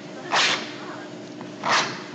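Two short swishing noise bursts, a little over a second apart, over a faint steady hum.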